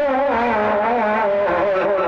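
A man singing a naat into a microphone, the amplified voice drawing out long melismatic notes that waver up and down in pitch without a break.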